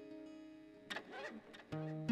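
Soft background film score: held musical notes fade away, a brief noisy swish sounds about a second in, and a new low note begins near the end.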